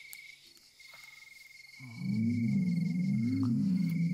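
Crickets chirping steadily. About two seconds in, a low electronic tone comes in much louder and wavers up and down in slow, even waves, an eerie synthesized effect.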